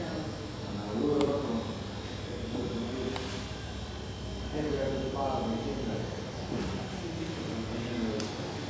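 Indistinct voices of people talking at a distance, in short scattered snatches over a low steady room hum, with a faint click about a second in.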